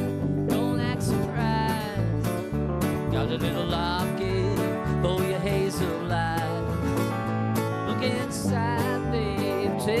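Country-rock band playing live: a strummed acoustic guitar and an electric guitar over bass and a steady beat, with a melody line that bends in pitch.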